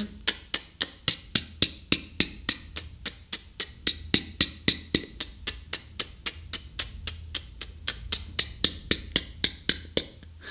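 Beatboxed closed hi-hat: an even run of short, crisp ejective tongue-tip "t" clicks, unaspirated, about four a second.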